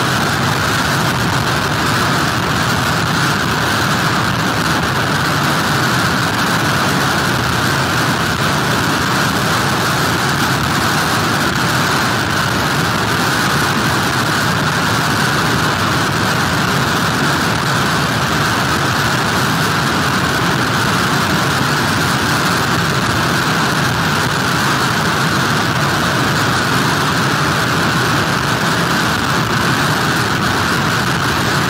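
Storm wind and heavy breaking surf picked up by an outdoor pier camera's microphone: a loud, steady rush of noise with no letup.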